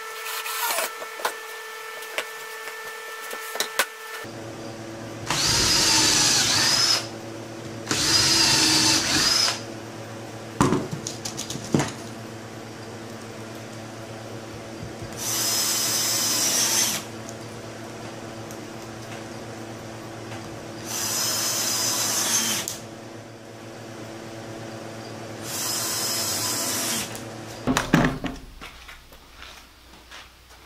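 Cordless drill driving wood screws into a pallet-wood frame, running in five short bursts of about two seconds each. Sharp knocks and handling clatter come between the runs, with a louder clatter near the end.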